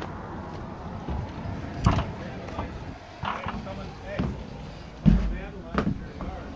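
A man talking off-mic, his words indistinct, with a couple of thumps. The louder thump comes about five seconds in.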